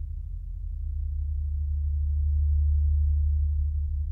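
Deep, steady synthesizer bass drone from a modular synth, swelling louder to a peak about three seconds in, then easing off.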